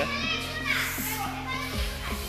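Children's voices over background music with steady held notes.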